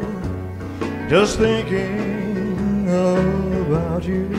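Country-style Christmas music with guitar, its melody sliding between notes.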